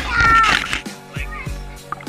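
A child's high-pitched laughing squeal in the first second, over background music with a steady beat.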